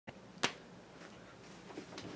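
A single sharp click about half a second in, then faint room tone with a few soft movement sounds near the end.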